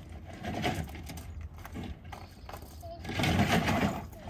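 Plastic wheels of a Cozy Coupe ride-on toy car and small footsteps crunching on gravel as the car is pushed and turned, irregular, loudest near the end.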